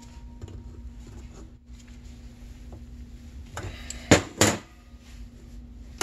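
Hands working on the metal oil injection pump and its control lever in a bench vise: a faint knock, then two sharp metallic clicks about a third of a second apart, past the middle, over a faint steady hum.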